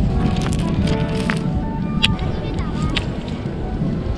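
Ocean surf and wind making a steady low rumble, with people's voices and music mixed in above it and a few sharp clicks.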